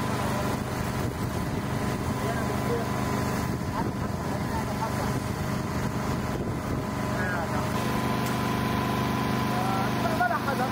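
A steady mechanical hum, unchanging in level, with faint voices of people in the background.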